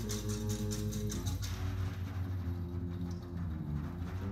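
Live jazz trio music with trombone, bass and drums: low notes held and changing in pitch, with a steady run of cymbal strokes over the first second and a half that then drops away.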